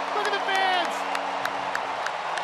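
Hands clapping repeatedly and sharply over a cheering stadium crowd. A man's voice calls out briefly in the first second.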